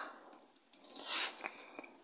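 Handling noise from the camera as it is swung around: a brief rustling rub lasting about a second, loudest a little over a second in.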